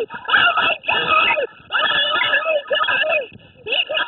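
Excited shouting from young men, loud and unintelligible, in several bursts with short pauses between.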